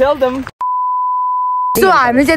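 A single steady, pure beep tone about a second long, edited into the soundtrack so that all other sound drops out while it plays. Talking comes just before and just after it.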